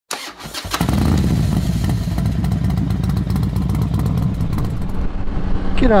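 Motorcycle engine running steadily, after a few sharp clicks in the first second.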